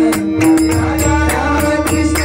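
Devotional bhajan music: a pakhawaj drum played with both hands, its sharp strokes ringing and its bass head giving a deep resonance that swells about half a second in. Metal hand cymbals jingle in time over a held melodic note.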